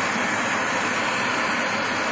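A steady rushing noise with no distinct events.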